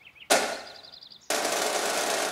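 A sharp drum hit, then a light quick rattle, then a sustained rapid drum roll that starts suddenly just past a second in, leading into a marching song.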